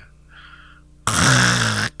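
A man's heavy, breathy sigh close into a handheld microphone, starting about a second in and lasting just under a second.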